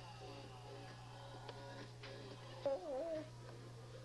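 A brief, wavering, high-pitched vocal call about three seconds in, over a steady hum and faint background talk.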